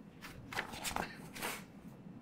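A handful of short rustling, handling noises picked up by a courtroom microphone, like papers being shuffled. The loudest come just after half a second and around one second in.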